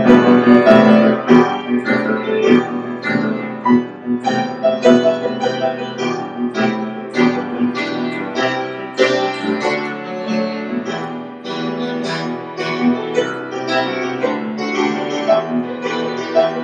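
Kemble piano played with both hands: a continuous run of chords and melody notes, loudest in the first couple of seconds and somewhat softer after.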